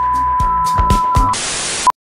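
Electronic logo sting: a steady high beep under a ticking rhythm and a few low hits. About 1.3 s in it switches to a half-second burst of hiss like TV static, then ends on a short beep and cuts off suddenly.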